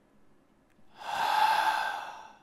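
A person breathing out long and audibly close to the microphone: a drawn-out exhale that starts about a second in and tails off over about a second and a half.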